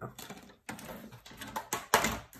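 Paper and a clear plastic ruler being handled on a tabletop: irregular rustling and light taps, with a sharper click near the end.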